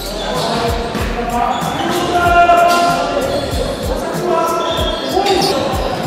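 Basketball bouncing on a hardwood gym floor, dull thuds repeating roughly twice a second, echoing in a large hall, with players' voices calling out over the top.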